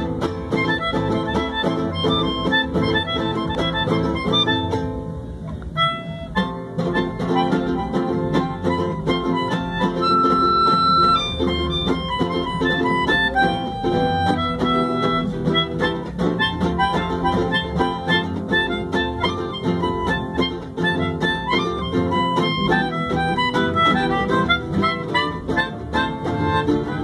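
A melodica plays a fast lead melody over two acoustic guitars, with a brief break about five seconds in.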